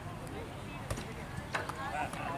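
Distant voices of players and spectators calling out over a low outdoor rumble, with two sharp clicks, about a second in and again half a second later.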